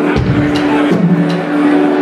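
A live rock band playing: held chords that change every half second to a second, with a bass line and cymbal hits above.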